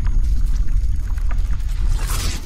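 Sound effects of an animated logo intro: a deep, steady rumble with scattered crackles, breaking into a bright whoosh at the very end.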